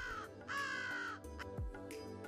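Crow cawing twice: the first caw trails off right at the start, and a second caw comes about half a second in and lasts under a second. Soft background music with a low beat runs underneath.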